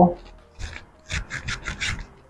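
Fingers rubbing sunscreen into the skin of the face: one short scratchy rubbing stroke, then a quick run of about five more in the second half.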